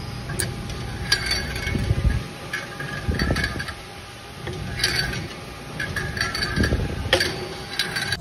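Weight stack of a gym leg press machine clinking and clanking as the plates are lifted and lowered during reps, with bursts of metallic clinks every few seconds and a few dull thumps as the stack settles.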